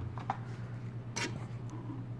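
Quiet handling of a plastic dashcam suction-cup mount: a couple of faint clicks early and a brief rustle just over a second in, over a low steady hum.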